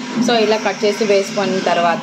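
A woman talking.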